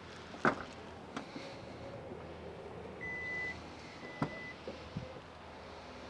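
2022 Hyundai Tucson power tailgate opening: two short warning beeps, about three and four seconds in, the second with the click of the latch releasing, then the faint hum of the electric motor as the tailgate lifts. Sharp clicks near the start, the loudest about half a second in.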